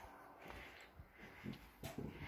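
Faint footsteps on a wooden deck, about two steps a second, over quiet outdoor background.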